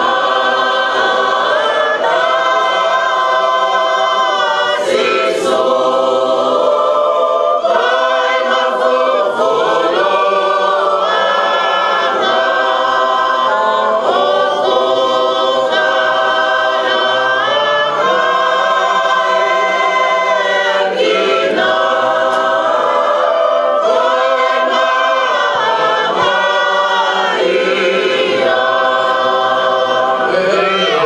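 A congregation of men and women singing a hymn together without accompaniment, in long held notes and phrases with brief breaths between them.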